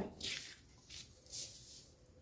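Three brief, faint rustles of paper pattern pieces being handled on the table.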